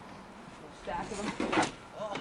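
Brief indistinct voices of young men talking, for under a second in the middle.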